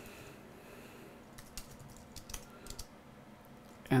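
Quiet typing on a computer keyboard: a handful of scattered keystrokes, mostly in the middle.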